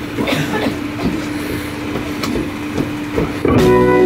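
Steady low hum and room noise with scattered knocks on a live-music stage between songs, then about three and a half seconds in the band starts playing and the sound gets louder.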